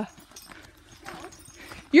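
Faint footsteps of people walking on a dirt forest trail, with a brief faint voice about a second in.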